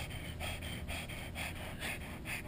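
Pug panting rapidly with its mouth open: quick, noisy, raspy breaths, about five or six a second.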